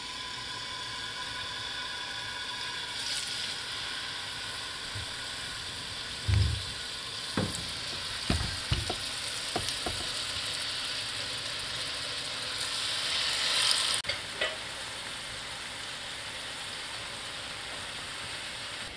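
Marinated chicken pieces sizzling as they shallow-fry in hot vegetable oil in a non-stick skillet. A few knocks sound as more pieces go into the pan about six to ten seconds in; the first knock is the loudest.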